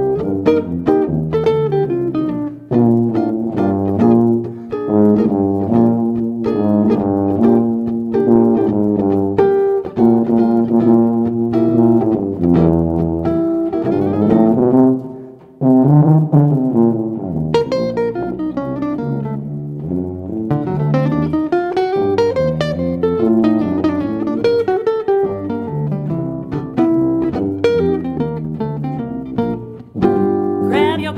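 Traditional jazz instrumental chorus on archtop guitar and sousaphone, the guitar picking chords and melody over the sousaphone's bass line, with a brief break about halfway.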